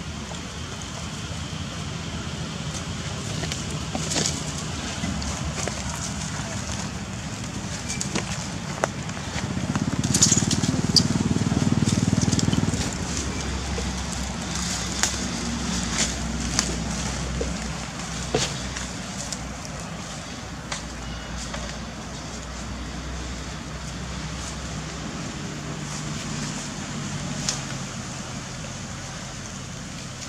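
Outdoor ambience: a steady low rumble with scattered sharp crackles and snaps of dry leaf litter as monkeys move about on it. A louder rumble swells for about two seconds near the middle.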